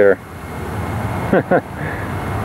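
Steady rushing outdoor noise that swells over the first second and then holds even, with a brief voice sound about one and a half seconds in.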